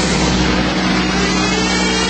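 Hardstyle electronic track in a stretch without drums: a sustained, buzzy synth chord holding steady, after the pounding beat drops out at the start.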